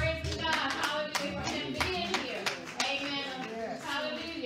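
Congregation hand-clapping in a steady rhythm, about three claps a second, under a woman's voice on a microphone, with a low thump right at the start.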